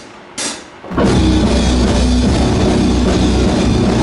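A heavy metal band starting a song live: one sharp percussive hit about half a second in, then just before a second in the electric guitars, bass and drums come in together at full volume and keep playing.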